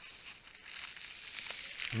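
Plastic bubble wrap around a stack of comic books crinkling softly as it is handled.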